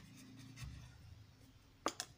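Pen writing on notebook paper with a faint scratching, then a short sharp click near the end.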